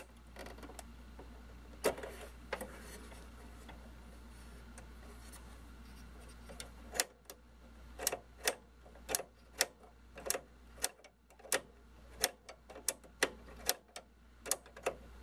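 Nylon cable tie being ratcheted tight around an oscilloscope's power-switch rod, a makeshift fix for a cracked plastic clip: after a few quiet seconds of handling, a run of small sharp clicks starts about halfway in, each one a tooth of the tie catching, at first about two a second and coming quicker near the end.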